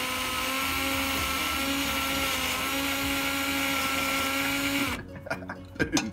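Black & Decker 18 V cordless drill running at a steady speed, spinning a potato on a wood drill bit against a hand peeler. The motor cuts off suddenly about five seconds in, followed by a few clicks.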